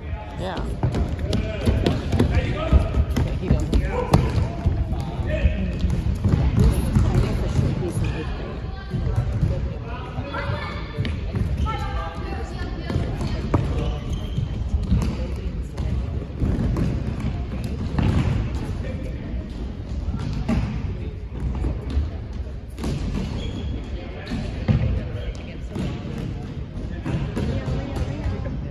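Soccer ball being kicked and bouncing on a hardwood gym floor, repeated thuds in a large hall, among the indistinct voices of players.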